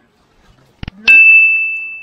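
A single bright bell-like ding, a sound effect that rings out and fades slowly over about a second and a half, marking a correct answer. A short sharp click comes just before it.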